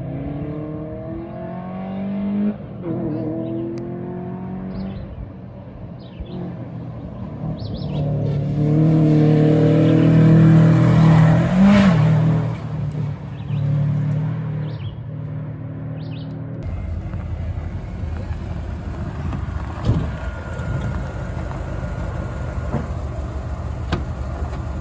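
A rally car on a gravel stage, its engine revving up through the gears as it approaches, getting louder and passing close by at full throttle just before the halfway point, its pitch dropping as it goes past, then fading away. A steady low rumble follows in the second half.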